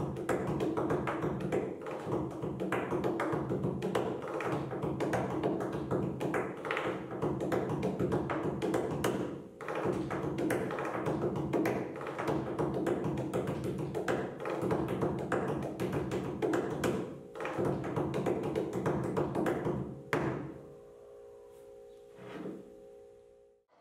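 Fingers drumming fast, dense patterns on a tabletop as a drummer's warm-up, with short breaks a little under halfway and about three-quarters through, stopping near the end. A steady sustained musical tone sounds underneath.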